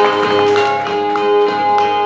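Amplified Brazilian cantoria violas playing the instrumental interlude between sung verses: plucked notes over a steady ringing held tone.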